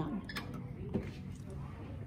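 A few faint, light clicks from the Handi Quilter Capri long-arm quilting machine as its needle-down button is pressed and the needle is lowered, over low room noise.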